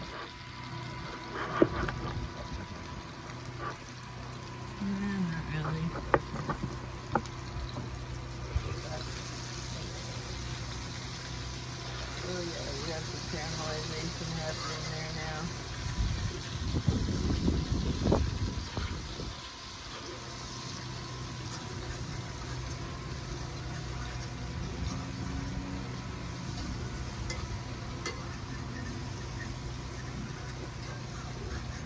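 Food frying in a skillet on a Coleman camp stove, with light clinks of metal tongs turning it. A low rumble swells and fades between about sixteen and nineteen seconds in.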